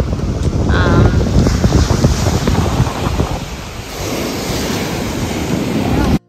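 Wind buffeting the microphone over rough surf breaking on a beach, the noise settling steadier about four seconds in.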